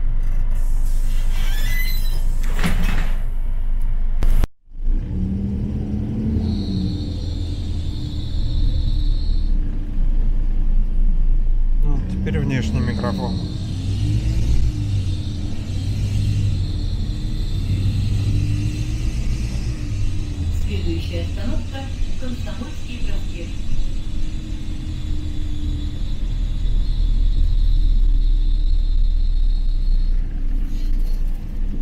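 Inside a moving LiAZ-4292.60 city bus: a steady low rumble of engine and running gear. The sound cuts out for a moment about four seconds in as an external microphone is switched on. After that a high steady whine comes in, stops, and returns from about twelve seconds in.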